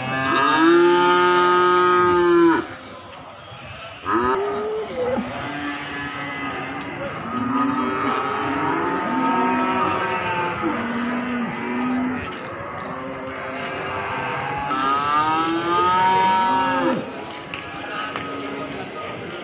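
Several cattle mooing. A long loud call comes first, a short one about four seconds in, then several quieter calls that overlap, and another long loud call near the end.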